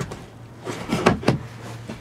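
A quick run of about four sharp knocks and clicks near the middle, from handling against the kayak's plastic hull, over a faint steady low hum.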